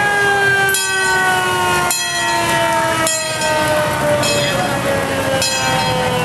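A siren tone held steadily while its pitch falls slowly and evenly, like a mechanical siren winding down. Sharp clicks sound about once every second over it.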